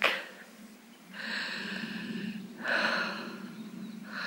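Two breaths close to the microphone of a handheld camera, each about a second and a half long, the first about a second in, over a faint steady low hum.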